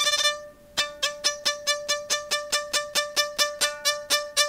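3Dvarius Line five-string electric violin, heard clean through its pickup. A held bowed note fades out, then from about a second in come short, quick bowed strokes at about four a second. One steady note rings on underneath, which the player hears as strings resonating that he isn't playing.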